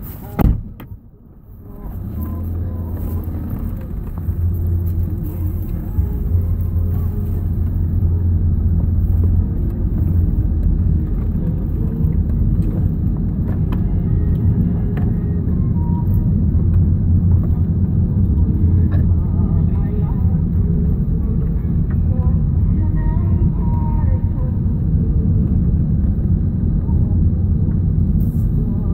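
Inside a car's cabin: a sharp knock right at the start, then from about two seconds in a steady low engine and road rumble as the car pulls away and drives on.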